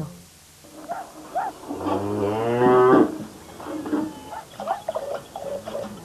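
A cow mooing: one long low call about two seconds in, with shorter, quieter sounds around it.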